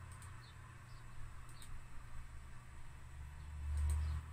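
A few faint computer-mouse clicks over a steady low hum, which swells just before the end.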